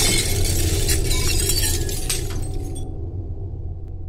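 Sound-effect glass and debris shattering over a low rumble, in the wake of an explosion. The crashing stops abruptly about three seconds in, and the rumble fades away.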